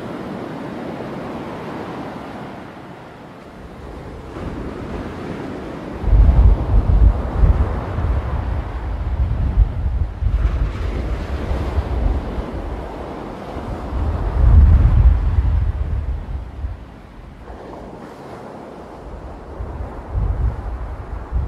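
Sea waves breaking and washing up the shore. From about six seconds in, gusts of wind buffet the microphone with a low rumble, strongest around fifteen seconds and easing near the end.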